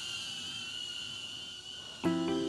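HOVERAir X1 Smart pocket drone's propellers whining at a steady high pitch, slowly fading as the drone flies back and away.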